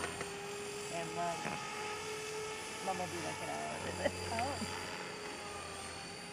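Radio-controlled model helicopter flying at a distance, its motor and rotors giving a steady high whine, with people's voices talking over it now and then.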